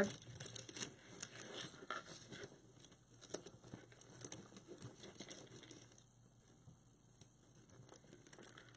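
Plastic deco mesh rustling and crinkling as hands bunch and tuck it, with scattered light ticks. The handling is busiest in the first few seconds and dies down over the last two.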